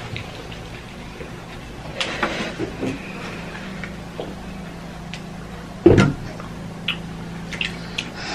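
A person drinking water from a plastic bottle: quiet sips and swallows, with one sharp, louder sound about six seconds in.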